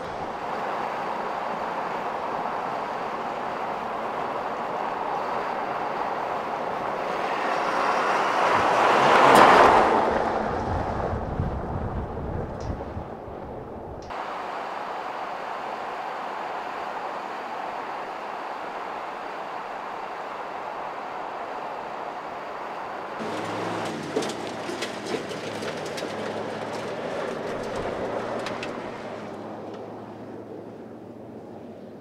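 Ford Super Duty pickup driving on a dirt road: engine and tyre noise swelling to a loud pass-by about nine seconds in, then fading. Later the engine's low note comes through, with a few sharp ticks.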